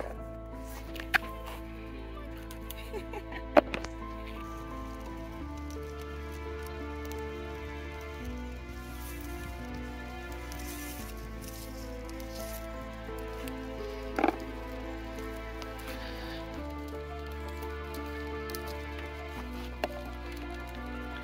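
Soft background music of slow, held chords over a steady bass, changing chord a few times. A few sharp taps and rustles stand out over it, the loudest about three and a half and fourteen seconds in, from haskap berries being picked by hand among the branches.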